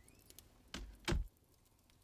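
A door being shut as the men go out: a softer sound, then a single louder thud about a second in.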